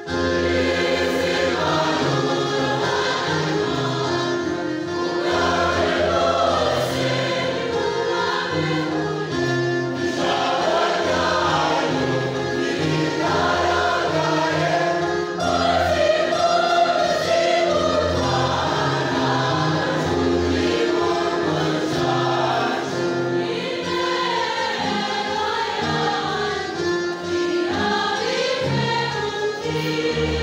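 A large church choir singing together, many voices holding sustained parts.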